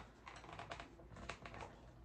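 Faint, irregular clicks and crackles of hands handling a plastic Icee cup as it is pressed down onto a floral pin into moss-covered foam.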